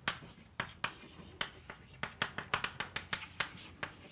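Chalk writing on a blackboard: a quick, irregular run of sharp clicks and taps, about four a second, as the chalk strikes and drags across the slate.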